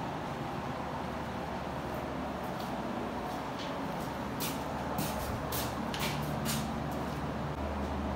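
A steady low mechanical hum, with a handful of light clicks and taps in the middle.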